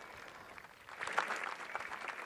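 Faint spectator applause, scattered claps starting about a second in over a quiet outdoor background.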